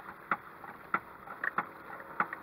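Electric fish thumper's rubber mallet knocking on the boat hull, a run of short sharp knocks a few times a second over faint wind and water noise.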